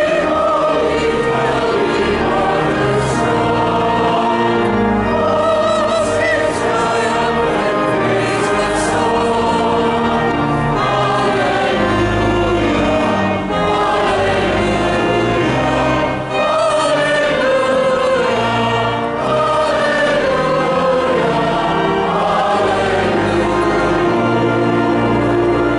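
Choir and congregation singing a processional hymn in a large reverberant church, with held low bass notes sustained beneath the voices.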